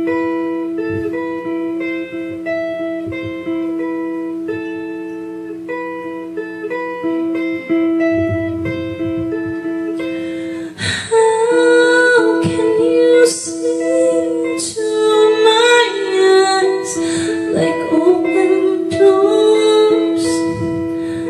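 Guitar picking a repeating figure of single notes over a steady held note. About eleven seconds in, a woman begins singing over the guitar.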